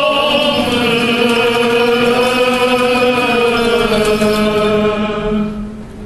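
Armenian Apostolic liturgical chant: voices singing long, slowly gliding held notes over a steady low drone. The melody fades out about five seconds in while the low drone note carries on.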